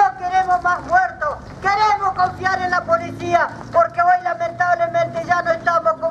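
A woman's voice speaking loudly through a handheld megaphone.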